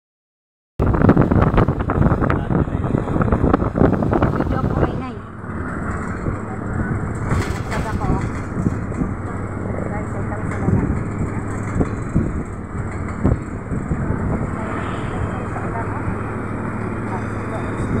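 Steady engine hum and road noise heard from inside a moving vehicle, louder and rougher for the first few seconds.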